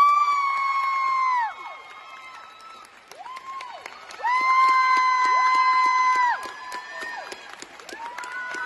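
Spectators cheering and clapping as a gymnastics routine ends: a spectator close by gives two long, high, steady shouts, one right at the start and one about four seconds in, over quick hand claps and shorter calls from the crowd.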